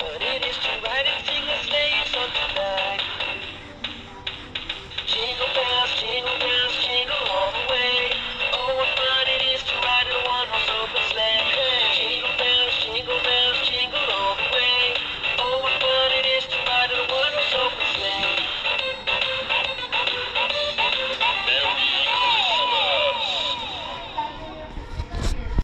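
Animatronic dancing Santa toy playing a Christmas song with singing through its small built-in speaker, thin and tinny with little bass, dropping briefly a few seconds in.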